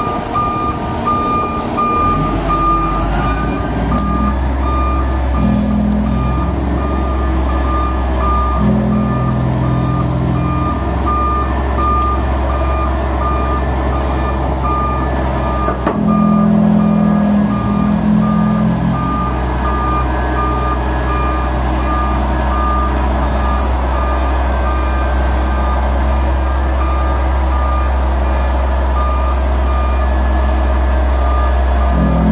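Caterpillar AD30 underground articulated haul truck reversing onto a lowboy trailer: its back-up alarm beeps steadily over the low running of its diesel engine. The engine note swells now and then as it is throttled up.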